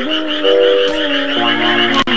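Cartoon frog croaking sound effects, a rapid, evenly repeating croak, over background music of held notes that step in pitch.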